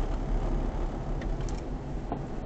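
Road and engine noise inside a moving car's cabin at about 50 km/h: a steady low rumble, with a couple of faint ticks in the second half.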